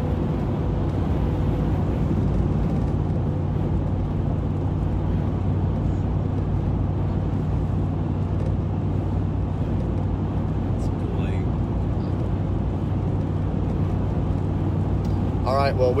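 Steady drone of a moving vehicle heard from inside its cabin: an even rush of road noise over a constant low engine hum.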